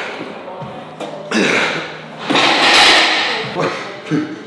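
Forceful exhalations and straining from a lifter grinding out reps of a heavy incline axle press, as a string of hissing breaths. The longest and loudest strain comes a little past halfway.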